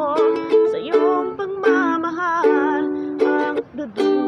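A ukulele strummed in chords, with a woman singing a slow ballad over it and her held notes wavering with vibrato. The sound drops away briefly near the end before the next strum.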